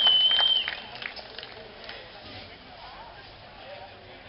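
Crowd applause with a long, high whistle over it; both cut off under a second in, and the clapping dies away to a low murmur of voices.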